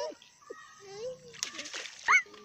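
A child's voice, then a short splash in the lake water about one and a half seconds in.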